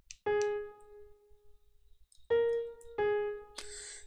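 Piano sound from MuseScore's playback sounding three single notes, A-flat, B-flat, A-flat: the recurring three-note melody. The first note rings and fades for over a second; the other two come about two and a half and three seconds in and are shorter.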